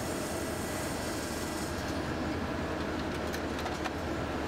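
Steady whirring hum of clinical laboratory analyzers running, with a few faint clicks in the last couple of seconds.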